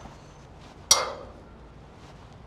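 A single metallic clank about a second in: a hooked metal bar, the 'clanking paddle', struck against metal, with a short ringing decay.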